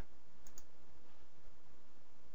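Two quick computer mouse clicks about half a second in, and a fainter click about a second later, over a steady background hiss.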